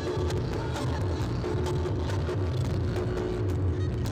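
Reog Ponorogo gamelan music accompanying a Bujang Ganong dance: drums beating steadily under sharp clicking strokes, with a held wind note that breaks off and comes back.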